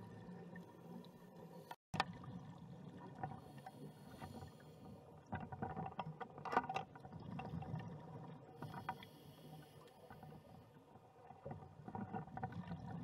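Underwater sound of a scuba dive: a low rumble with crackling and bursts of bubbling from divers' exhaled regulator air. It cuts out briefly about two seconds in.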